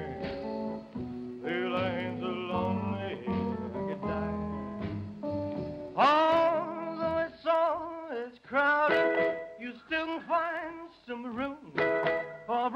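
Live rock and roll song: a male lead voice sings with wavering, gliding notes over band accompaniment with guitar and held backing notes. A strong upward vocal slide comes about halfway through.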